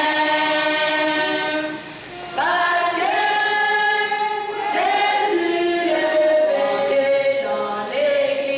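A congregation singing a hymn together in long held notes, breaking briefly about two seconds in before the next phrase begins.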